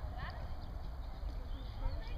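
People's voices talking in the background over a steady low rumble.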